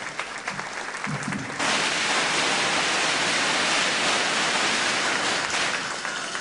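Audience applauding: scattered separate claps at first, swelling about one and a half seconds in to full, dense applause, which eases off slightly near the end.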